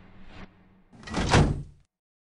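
A metal filing-cabinet drawer sliding shut: a rush that swells about a second in and stops short under a second later.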